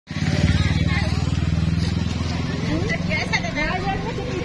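A motorcycle engine running close by, loudest for the first two seconds and then fading, with voices calling over it in the second half.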